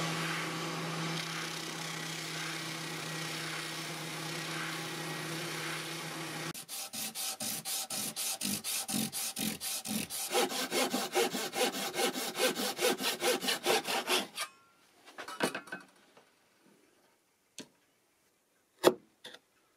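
Benchtop spindle sander running with a steady hum while a small black Tusq nut blank is sanded against its drum. About six and a half seconds in the motor stops, and quick, even back-and-forth hand-sanding strokes follow, about four or five a second, until near the end, when a few light ticks are heard.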